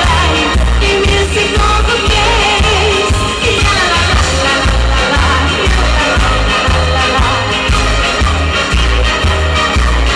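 Live amplified band music with a steady pulsing bass beat and a woman singing into a handheld microphone.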